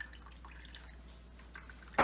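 Red cabbage juice dripping and trickling faintly from a sieve of cooked cabbage into a bowl of the dark liquid.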